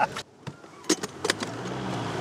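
A vehicle's rear door being opened: three or four sharp latch clicks about a second in, followed by a steady low hum.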